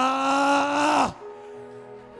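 A man's voice amplified through a microphone, holding one long drawn-out vowel for about a second before cutting off. Soft sustained background music continues under it and carries on faintly afterwards.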